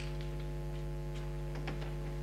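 Steady electrical mains hum with a ladder of overtones, with a few faint ticks over it.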